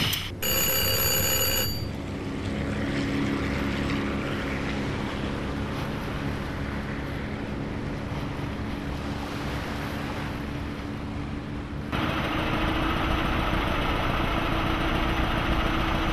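A short high ringing tone, then the steady engine drone of a river boat under way. About twelve seconds in, the drone cuts to a brighter, hissier steady noise.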